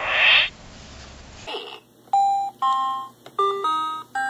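A short burst of electronic noise from a VTech Follow Me Writer toy as it shuts down. Then, after a pause, an R2-D2-shaped VTech toy laptop gives a string of short electronic beeps at jumping pitches.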